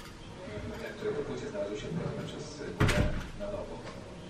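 Indistinct talk from a radio broadcast, with one sharp knock or bang about three seconds in.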